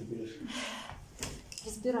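Quiet, broken speech in a small room, with a short breathy sound in the middle and a single click.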